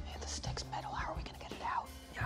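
A man whispering a few words over low, steady background music.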